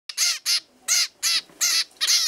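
Hungry zebra finch chicks' food-begging calls: five short calls, each rising then falling in pitch, about two and a half a second.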